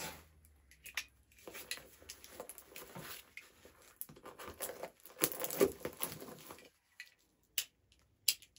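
A cardboard box being opened by hand: irregular scraping, tearing and crinkling of tape and cardboard, loudest about five to six seconds in.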